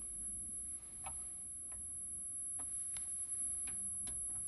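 A steady, high-pitched 10,000 Hz sine tone from a loudspeaker driven by a signal generator. Several faint clicks come from the oscilloscope's rotary knobs as they are turned.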